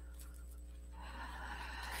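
Quiet room tone with a steady low hum. A faint soft noise swells in the second half.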